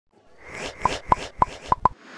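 Animated intro sound effect: five quick plopping pops, each with a short ringing tone, coming in fast succession over a swelling swish.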